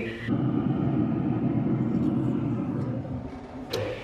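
A steady low rumble with no distinct pattern, ending in a sharp click near the end.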